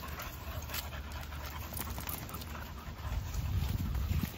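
Dogs panting heavily while playing, over a steady low rumble.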